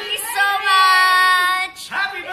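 A group of women's voices singing together in long, high held notes, breaking off briefly near the end.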